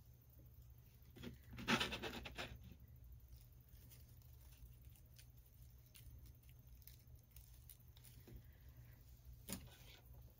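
Faint rustling and light clicks of small dry twig pieces being handled and pushed into a twig bird's nest, with a louder rustle about two seconds in and a sharp click near the end.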